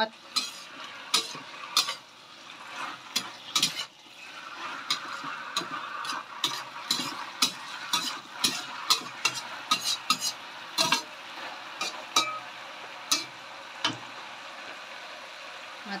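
Stainless steel spatula scraping and clanking irregularly against a stainless steel wok while wood ear mushrooms and leeks are stir-fried, over a steady sizzle that is strongest through the middle of the stretch.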